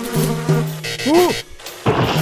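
Cartoon sound effect of a fly buzzing: a steady low buzz, with the pitch swooping up and back down about a second in. A sudden swish comes near the end.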